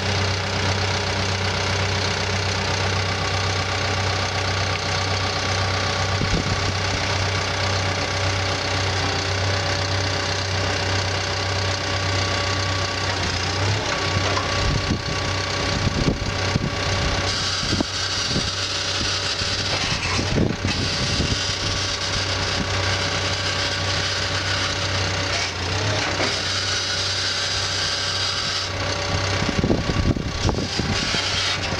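Caterpillar D5K2 crawler dozer's diesel engine idling steadily just after start-up. From about halfway there are several knocks and changes in the engine note, again near the end, as the hydraulic blade is raised and angled, cycling hydraulic fluid through the system.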